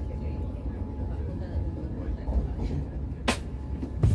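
Low, steady rumble of a light rail tram running along its track, heard from inside the passenger cabin. A single sharp click about three seconds in.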